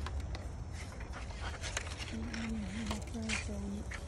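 A person's voice murmuring in a few short pitched phrases in the second half, over a low rumble and scattered light clicks.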